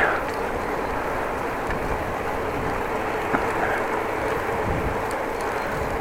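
Steady rushing noise of a bicycle ride on a bike-mounted camera: wind over the microphone and tyres rolling on asphalt, with a faint click a little past halfway.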